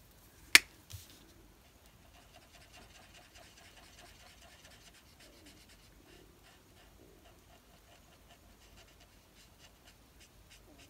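A sharp click about half a second in as an Ohuhu alcohol marker's cap is pulled off, then the faint scratch of the marker tip being stroked back and forth across card as the drawing is coloured.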